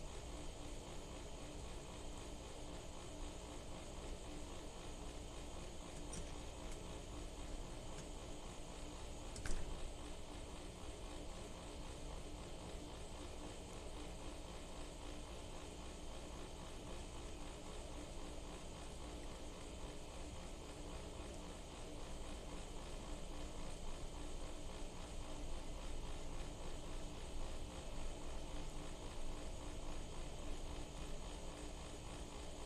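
Steady outdoor background hum and hiss with no one near, a single brief click about nine and a half seconds in, growing slightly louder in the last third.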